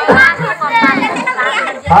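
Crowd chatter: several voices talking over one another, with a man's voice starting a prize announcement near the end.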